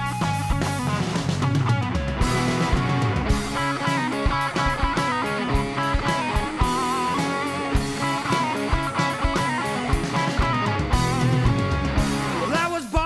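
Instrumental passage of a hard rock song: electric guitars and a drum kit keep a steady beat, with no vocals.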